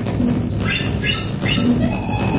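Live electronic music: about four high, whistling glides that each fall in pitch, one after another, over a dense low rumbling texture with a steady low hum.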